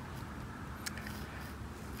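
Faint, steady low wind noise on the microphone, with one faint click just under a second in.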